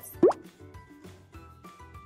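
A short sound effect with a quickly rising pitch, like a plop, about a quarter of a second in, followed by soft background music.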